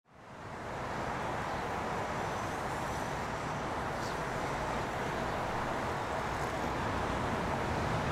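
Steady hum of distant urban road traffic, fading in over the first second.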